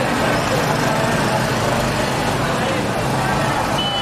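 Street ambience: steady traffic noise with indistinct voices of people nearby.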